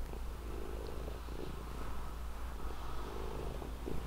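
A domestic cat purring steadily.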